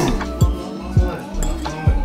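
Background music with a steady beat, and a metal fork clinking against a ceramic plate near the start.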